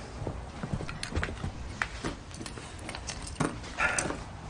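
Scattered clicks and knocks of a bag and its contents being handled, with a short rustle near the end.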